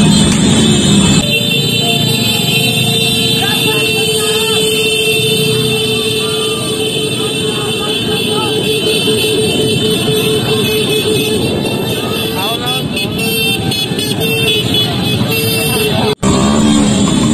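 Motorcycle convoy street noise: a crowd shouting over running motorcycle engines, with a horn held on one steady note for about ten seconds that then sounds in shorter blasts. Music plays for about the first second before a cut.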